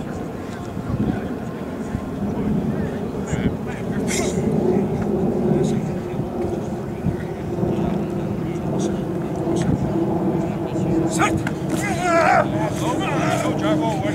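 Steady low outdoor background rumble, with a low hum settling in about halfway. A few sharp knocks come about three-quarters of the way through as football players collide in a blocking drill, then a voice calls out near the end.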